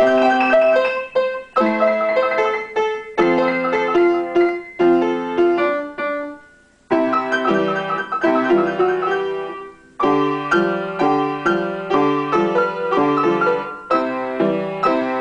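Upright piano played four hands as a duet, starting right at the beginning. A phrase dies away to a brief silence just past the middle, then the playing resumes fuller, with a lower part added under the melody.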